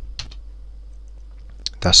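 Computer keyboard clicks, one shortly after the start and another just before a man says a word near the end, over a low steady hum.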